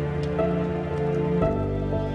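Slow, melancholic piano music, with a new low chord entering about a second and a half in, layered over the steady patter of rain.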